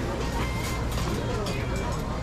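Street ambience: indistinct chatter of diners and passers-by at outdoor restaurant tables, with music playing and a steady low hum underneath.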